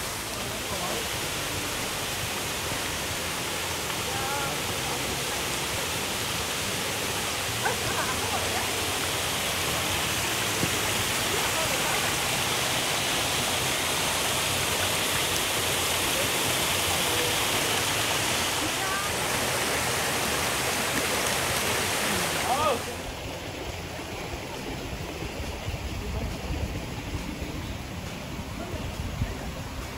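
Small waterfalls spilling over boulders into a rocky stream pool, a steady rush of water that grows a little louder toward the middle. About four-fifths of the way through it cuts off suddenly to a quieter flow with more low rumble.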